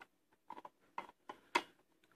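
Faint ticks from the wheel pack of a Taylor Group 2 safe combination lock, turned by hand with the cover off while the lever nose rides on the cam wheel: about five small clicks spread over two seconds.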